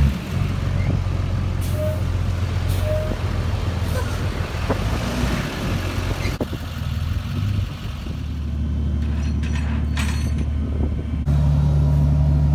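Heavy tow truck engine running steadily with a low drone, dipping briefly and then getting louder near the end. A few brief sharp sounds come over it.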